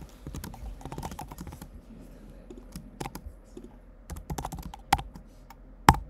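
Typing on a computer keyboard: irregular runs of keystrokes with short pauses between them, one louder key strike near the end.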